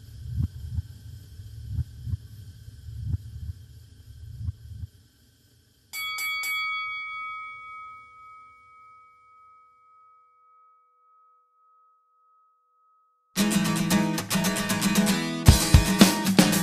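Low, irregular thudding pulses for about five seconds, then a bell struck four times in quick succession, like a boxing-ring bell, its ringing tone dying away over about four seconds. After a few seconds of silence an indie rock band comes in loudly with electric guitars and drums.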